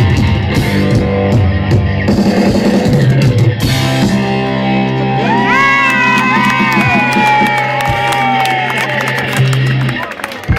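Live amateur rock band with acoustic and electric guitars playing loudly: drums and guitars for the first few seconds, then a long held chord with notes sliding up and down over it, ending the song near the end.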